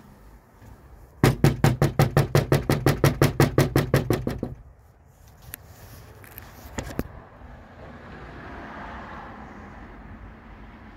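Rapid knocking on a storm door, about seven knocks a second for some three seconds, followed by a few separate clicks.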